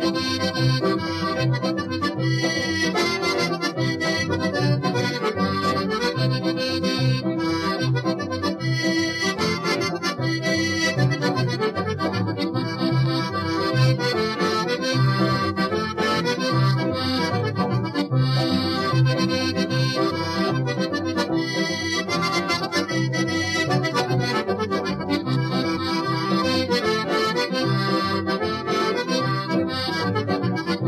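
Accordion-led band playing a traditional Newfoundland jig or reel, the accordion carrying the melody over a steady, even rhythm backing.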